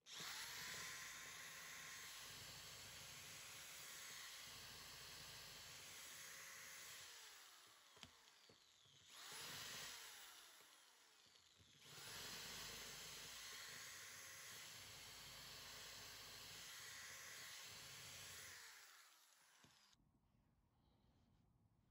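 Ryobi electric drill drilling out the rivets of a circuit breaker case: the motor spins up and runs for about seven seconds, gives a short burst, then runs again for about six seconds before stopping near the end.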